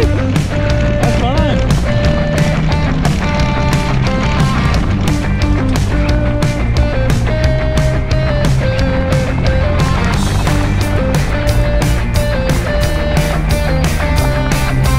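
Rock music with a steady, driving drum beat.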